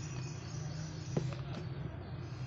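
Sound from a satellite TV channel playing through the television's speaker: a steady low hum with hiss, and a single click about a second in.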